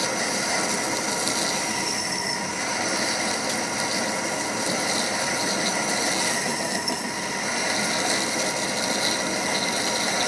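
Hendey metal lathe running under power with a steady mechanical whir and several steady whine tones while a twist drill in the tailstock bores into the spinning workpiece.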